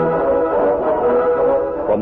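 Orchestral music with brass, holding sustained chords: a bridge cue marking a scene change in an old-time radio drama.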